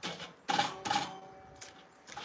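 Split firewood knocking against a steel fire pit as logs are fed in: three sharp knocks in the first second, the last two leaving a brief metallic ring that fades away.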